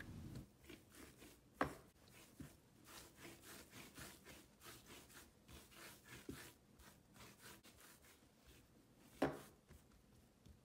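Hands rolling and kneading soft butter dough on a silicone baking mat: faint, repeated rubbing strokes, with two sharper knocks, one about one and a half seconds in and one near the end.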